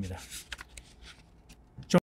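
Light paper rustling with a few short, sharp ticks, as a sheet of a script is handled at a podium microphone.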